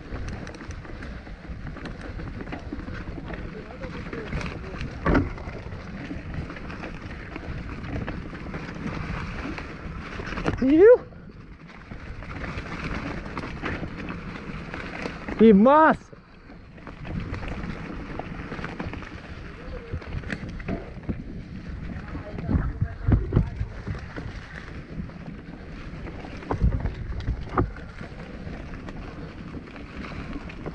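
Mountain bike riding down a rough dirt trail: steady rush and rattle of the bike over the ground, with knocks and thumps from bumps and roots, busiest in the last third. Twice around the middle, a loud short whoop rising and falling in pitch.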